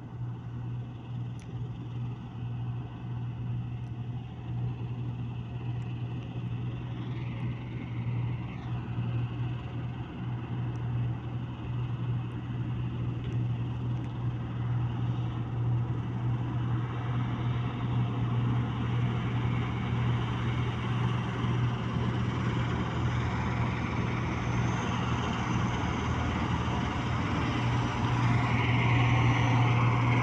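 New Holland combine harvester running steadily while harvesting wheat: a constant low engine drone with machine noise from the threshing works, growing louder as the combine comes closer.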